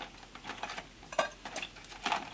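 Faint, scattered clicks and clinks of sticks of chalk being handled and dropped into a small pot, a few separate taps over two seconds.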